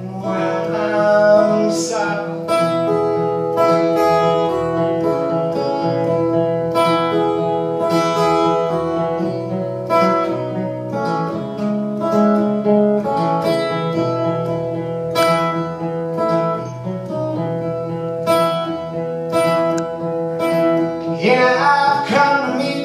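Acoustic guitar strummed steadily in an instrumental break, ringing chords played live on stage.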